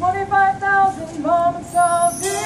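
A solo melody in a marching band's show: a single high, voice-like line of held notes that step up and down in pitch, a new note every third to half second.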